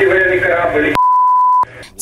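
A man's voice over a narrow-band military radio says 'Russian warship…' in the Snake Island defenders' reply. About a second in, the obscenity is covered by a steady one-tone censor bleep lasting just over half a second.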